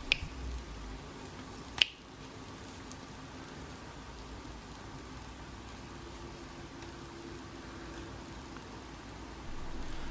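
Clicks from a Manfrotto PIXI mini tripod's plastic legs being folded together in the hand, the sharpest single click just under two seconds in, followed by a low steady room hum.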